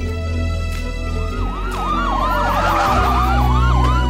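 A hip-hop beat with a siren effect mixed in. From about a second in there is a fast, repeating up-and-down siren wail over a long falling tone, all above a steady bass line.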